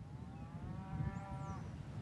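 A cow mooing once: one long call of about a second and a half, over a steady wind rumble on the microphone. A faint, high bird note sounds partway through.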